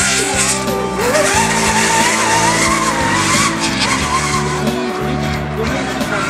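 A rally car's engine running hard as it slides on loose dirt, mixed under background music.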